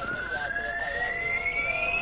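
A single whine rising steadily in pitch, a film sound effect building up.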